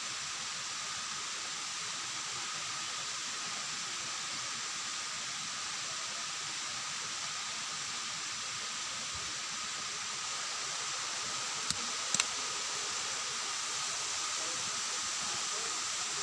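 Steady rushing of a waterfall, an even hiss with no change in level, broken by two sharp clicks about twelve seconds in.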